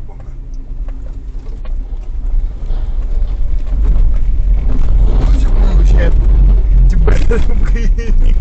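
Toyota Rush driving over a rough, unlit dirt road, heard inside the cabin: a low road and engine rumble with frequent knocks and rattles from the suspension and body, getting louder about halfway through.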